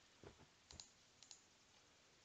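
A few faint computer mouse clicks, in about three close pairs over the first second and a half, against near silence.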